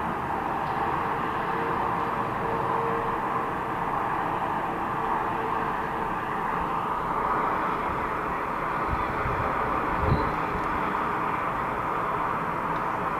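Steady traffic noise from cars and lorries passing on a multi-lane highway, mostly tyre hiss with a continuous rush. A brief low thump comes about ten seconds in.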